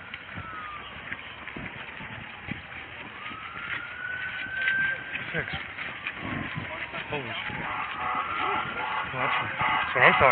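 Emergency vehicle siren wailing, its pitch slowly rising and falling, with footsteps and voices in the background.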